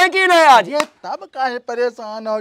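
A man's raised, strained voice calling out, its pitch sliding down and cutting off just before the first second, with a brief sharp click. Ordinary talking follows.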